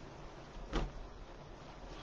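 Faint room tone with one brief, soft handling noise about three-quarters of a second in, from satin ribbon tails being fluffed and curled by hand.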